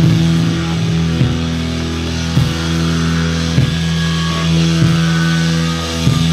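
Hardcore punk band playing live: distorted electric guitar and bass holding sustained chords over slow, heavy drum hits about every second and a quarter.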